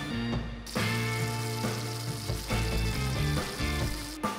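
Ribeye steak sizzling in a cast-iron skillet, the sizzle starting suddenly a little over half a second in, under background music.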